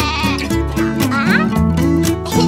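Upbeat children's-song backing music with a cartoon sheep bleating over it, a wavering high call near the start.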